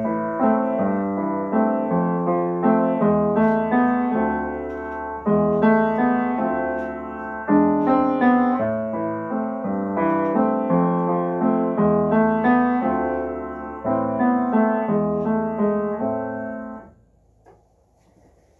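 Upright piano playing an accompaniment in three-time, a steady run of chords and bass notes, which stops about a second before the end.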